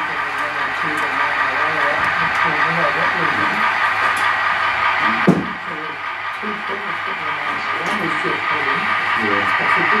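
People talking indistinctly in a room, with one sharp knock about five seconds in.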